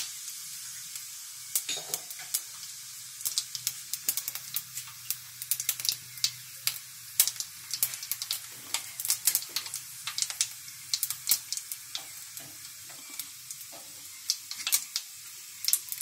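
Fennel and nigella seeds sizzling in hot oil in a steel kadhai, tempering for a tadka: a steady high hiss with frequent sharp pops and crackles throughout.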